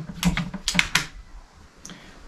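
Plastic clicks and rattles of an 18 V Bosch battery pack being slid and latched into a Bosch GKT 18V-52 GC cordless plunge saw: a quick run of clicks in the first second, then a single click near the end.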